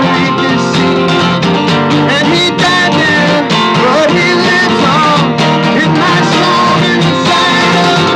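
A man singing a folk song while strumming an acoustic guitar.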